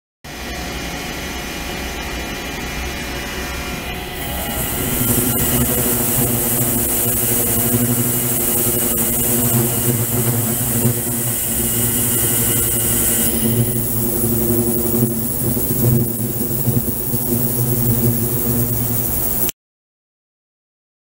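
Ultrasonic cleaning tank running with its liquid-circulation pump: a steady machine hum. A high hiss comes in about four seconds in and drops away again about nine seconds later.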